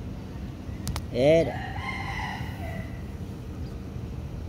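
A rooster crows once about a second in; the crow rises, holds and trails off over under two seconds. A short click comes just before it, and a steady low rumble runs underneath.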